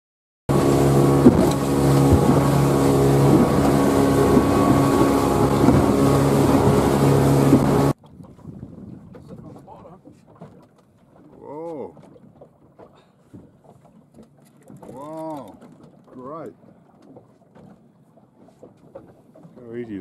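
Motorboat engine running at a steady drone, loud, which breaks off suddenly about eight seconds in. After it the sound is much quieter, with a few drawn-out calls that rise and fall.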